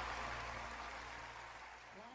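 Audience applause over the last held chord of the band, the whole fading out steadily.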